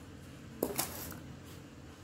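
A single short knock about half a second in, followed by a brief rustle, over a faint steady low hum.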